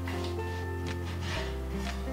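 Background music with sustained low chords. Over it, a few short scratchy strokes of a serrated knife sawing through baked puff-pastry crust onto a wooden cutting board.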